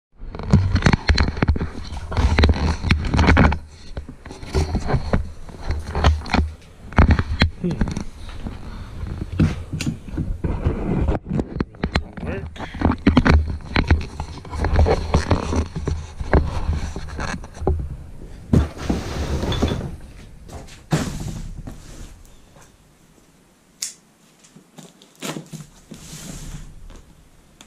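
Close handling noise of an action camera being moved and set down on a cooler lid: knocks, rubbing and low rumbles on the microphone. There is rustling about three-quarters of the way through, then quieter scattered clicks.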